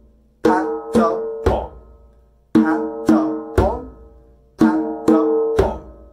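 Djembe played with bare hands in a pa-ta-pon pattern: two ringing open tones struck at the edge, then a deep bass tone struck in the middle of the head. The pattern is played three times, about two seconds apart.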